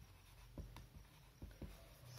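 Marker pen writing on a whiteboard, faint, with a few soft ticks as the tip strokes and touches down.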